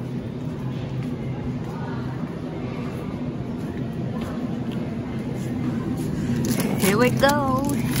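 Steady low electrical hum of a supermarket's open refrigerated display cases, with faint background store noise. A voice comes in about a second before the end.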